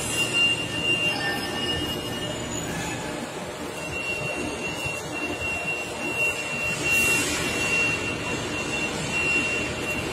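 Steady mechanical background noise of a warehouse, with a thin high whine through most of it and a brief high hiss about seven seconds in.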